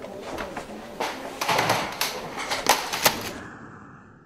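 A computer being struck and smashed: a run of sharp bangs and clattering knocks of hard plastic, the loudest two blows close together about three seconds in.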